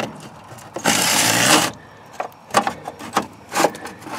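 Steel lift cable of a pop-up camper's roof-lift system being pulled and handled in its aluminium corner channel: light metallic clicks and rattles, with a brief scraping rush about a second in.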